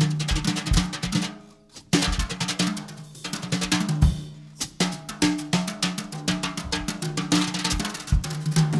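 Jazz drum kit break played with wire brushes: rapid snare and cymbal strokes, with upright double bass notes underneath. The playing drops almost to nothing for a moment about a second and a half in.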